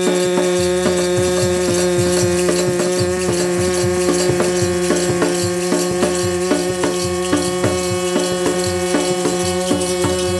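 Instrumental kirtan passage: a harmonium holds sustained drone notes while a dholak hand drum keeps a steady quick beat, about three strokes a second, and a chimta's brass jingles rattle along with it.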